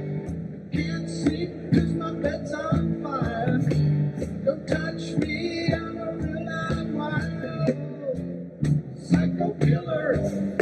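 Live band music: electric bass and guitar over a hand-struck wooden box drum keeping a steady beat of about two strokes a second.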